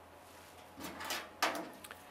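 Hands working sticky-back mounting tape on a flexo plate cylinder: two short scuffing, rubbing sounds about a second in and a second and a half in, then a couple of faint ticks near the end.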